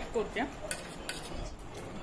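A few light clinks of a spoon against a dish while eating.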